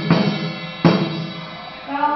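Two loud drum strikes about three-quarters of a second apart in chầu văn ritual music, each ringing briefly. Singing comes back near the end.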